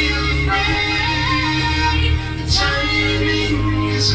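A song: a man singing long held notes over a backing track with a steady bass.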